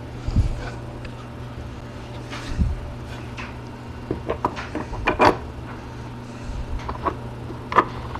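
A three-quarter-inch plywood board is handled and lowered over clamping bolts onto a stack of pages, giving scattered wooden knocks and light clicks. They cluster about four to five seconds in, and the loudest knocks come about five seconds in and just before the end. A steady low hum runs underneath.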